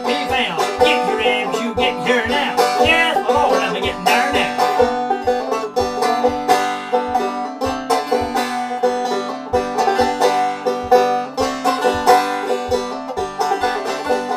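Open-back banjo played clawhammer style in an instrumental break, a steady run of plucked notes without singing. A low thump keeps the beat about twice a second.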